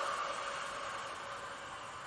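A woman's long, steady exhale through the mouth, slowly fading. It is a controlled Pilates breath out, timed to the effort of raising the arms in a held squat.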